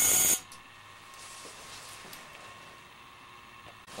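High-voltage arc flashing over on an ion lifter inside a partly evacuated vacuum chamber: a loud, sharp crackling burst lasting about half a second at the start, then a faint steady hiss. The arcing is electrical breakdown in the thinned air, which the experimenter calls "really breaking down".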